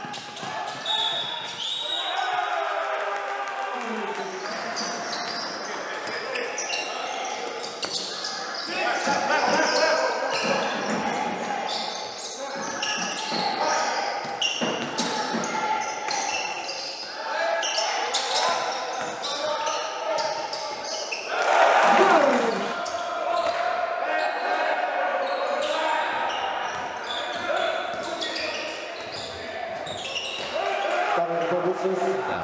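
Basketball game sound in a large, echoing gym: a ball bouncing on the hardwood court among voices and shouts. A loud falling shout comes about two-thirds of the way through.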